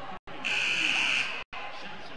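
Basketball scorer's-table buzzer sounding once, a steady high buzz lasting about a second, signalling a substitution during a stoppage after a foul.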